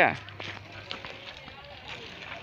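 A short spoken word at the start, then quiet outdoor sound with scattered light clicks: footsteps and a child's training-wheel bicycle rolling on a concrete lane.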